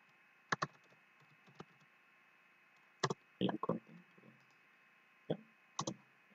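Irregular keystrokes on a computer keyboard: a few short, sharp clicks in small groups about half a second in, around three seconds and again near the end.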